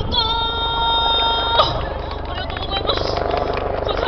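A woman's singing voice through a PA system holds one long steady note that cuts off about a second and a half in. Crowd noise with clapping and voices follows.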